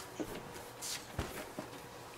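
Faint handling of paper and card on a cutting mat: a few light taps and a brief rustle.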